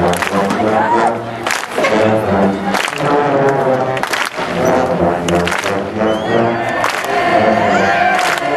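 A massed section of marching-band sousaphones and other low brass playing together, holding low notes that change every second or so, with sharp hits every second or two.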